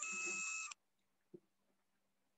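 A short electronic tone with hiss, about three-quarters of a second long, that starts and cuts off suddenly, followed about a second later by a faint single tick.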